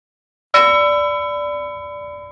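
A single bell-like chime struck about half a second in, its several ringing tones slowly fading away: an outro sound effect.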